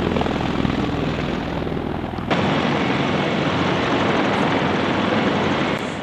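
CH-53 heavy-lift helicopter's rotors and turbine engines running close by, a loud steady din with a fast rotor beat. It gets suddenly louder and brighter a little over two seconds in.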